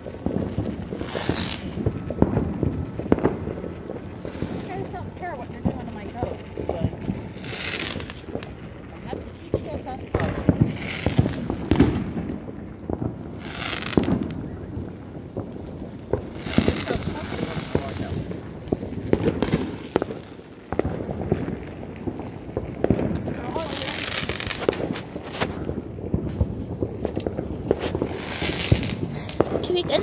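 Fireworks and firecrackers going off along the street: a dense run of sharp bangs and crackling pops, with louder bursts every few seconds.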